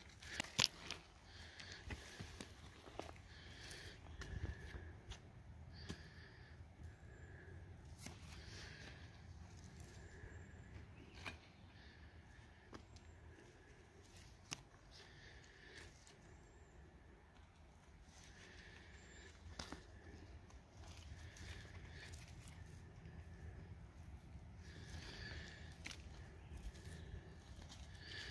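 Faint clicks and scrapes of rock pieces being picked up and handled in work gloves over loose gravel, the sharpest click about half a second in. Behind them a soft high note repeats about once a second.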